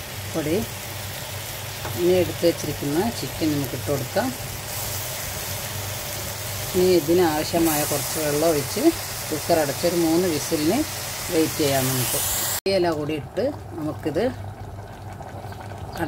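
Speech in short phrases over a steady background hiss; the hiss cuts off sharply about three-quarters of the way through.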